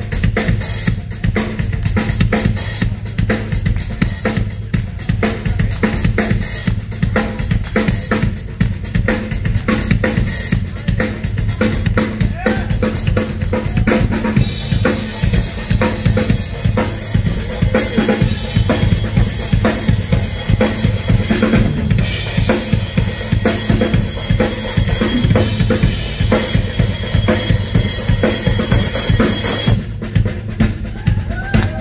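Drum solo on a full drum kit: fast, dense strokes on the bass drum, snare and toms, with a wash of cymbals joining about halfway through.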